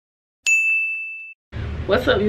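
A single bright ding sound effect marks the cut from the intro: one bell-like tone that rings for about a second and then cuts off abruptly. A woman starts talking near the end.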